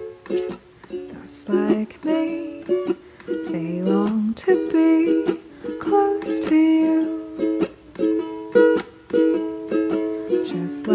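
A ukulele plays an instrumental passage of a slow ballad, plucking single notes and strumming chords in a gentle, uneven rhythm.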